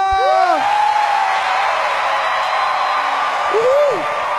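A singer's held final note ends about half a second in, and a large concert audience then cheers and applauds. A single voice calls out near the end.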